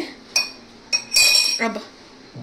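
Metal spoon clinking against a dish twice: a short light tap, then a louder strike that rings for about half a second.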